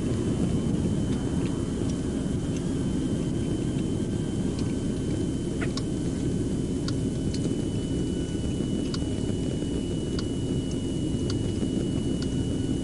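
Steady low rumble of a patrol car idling at the roadside, with a faint steady high whine and scattered faint ticks.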